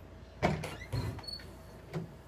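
Interior door with a lever handle being unlatched and pulled open: a sharp click of the latch about half a second in, then softer knocks and a brief high squeak as it swings open.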